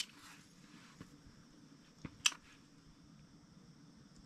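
Quiet background with a faint steady hum and hiss, broken by two short sharp clicks a little over two seconds in.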